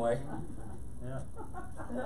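A man's voice, quiet and broken into several short sounds, well below the level of the sermon.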